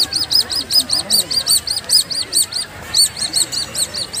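Rapid, evenly repeated high-pitched chirps, about six a second, with a brief break about three seconds in.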